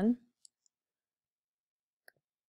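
Two faint computer mouse clicks about a fifth of a second apart, just after the end of a spoken word.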